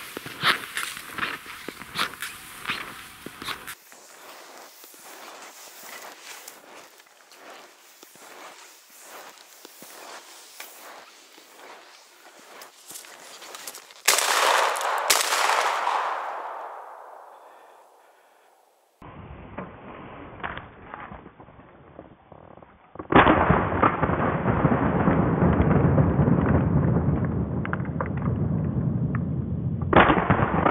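Footsteps crunching through snow, then a single shotgun shot about halfway through whose report rolls away through the woods over a few seconds. Near the end a loud, steady rough rumble of wind and handling noise on the camera microphone takes over.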